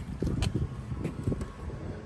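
Wind buffeting the microphone as a low, uneven rumble, with a few faint ticks from handling.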